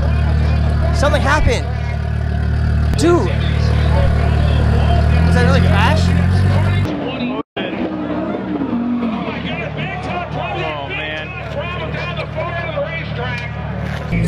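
Drag-racing car engines running loud and steady at the starting line with people's voices over them, the engine note stepping up about five seconds in. After an abrupt cut about halfway through, excited voices of onlookers dominate over quieter car noise.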